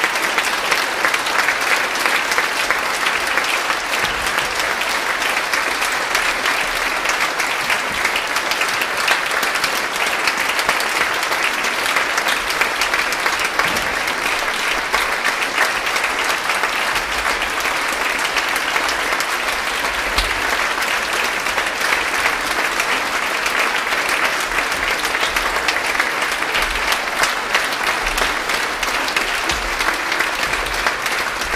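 Concert-hall audience applauding: dense, steady clapping that holds without a break.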